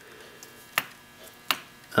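Two sharp metal clicks, about three-quarters of a second apart, from the power-feed direction clutch between the bevel gears of a milling machine's table drive being pushed to engage. The clutch doesn't want to engage.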